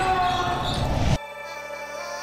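Intro sting with a voice over loud music, cutting off abruptly a little over a second in; then quieter background music of sustained, steady synth tones.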